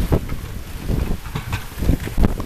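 Strong storm wind gusting on the camera microphone, with wind-driven rain and several knocks from the camera being jostled.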